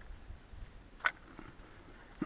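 A quiet outdoor background with one sharp, short click about a second in.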